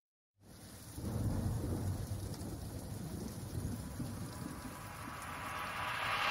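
A moment of silence, then a quiet rain-and-thunder ambience with a low rumble that grows slightly louder toward the end.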